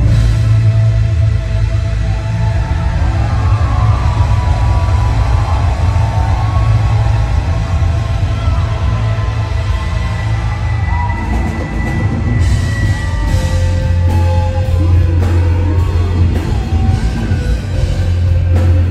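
Live rock band music played loud over a festival sound system, with heavy steady bass and melodic lead lines, and cymbal hits coming in about two-thirds of the way through.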